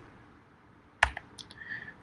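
About a second in, a sharp click followed by a few lighter clicks from a computer keyboard or mouse being pressed, against near silence.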